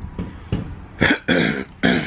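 A man coughing: three short, loud coughs in quick succession in the second half, part of a coughing fit.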